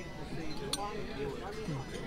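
Dining-room murmur of diners' voices, with a single sharp clink of tableware about a third of the way in.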